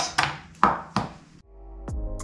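Chef's knife chopping through a Roma tomato onto a cutting board, three sharp strokes in the first second and a half. After that, background music with a beat fades in.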